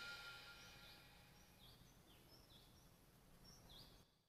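Near silence as the song's backing music fades out in the first half second, leaving several very faint, short high chirps.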